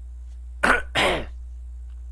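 A man clearing his throat close to the microphone: two loud rasps in quick succession, about half a second and a second in.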